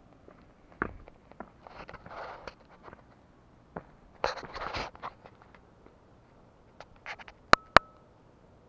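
Handling noise and rustling close to a handheld camera: scattered light clicks and two bursts of rustling, then two sharp clicks near the end with a short steady tone between them.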